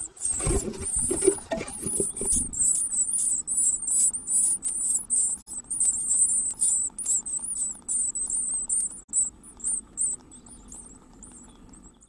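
Great tit nestlings begging: rapid, very high-pitched cheeps, several a second, fading out near the end. For the first two seconds or so an adult's wings flutter and scrabble in the nest box as it flies out.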